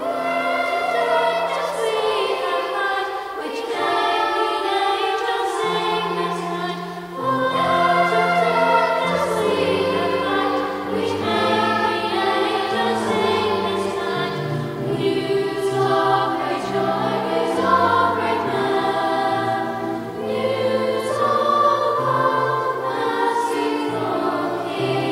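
School choir singing a carol with grand piano accompaniment, several voice parts sounding together in long held notes.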